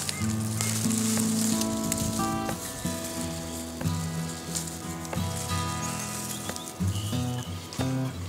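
Background music of held notes that change pitch every half second or so, over a steady high hiss.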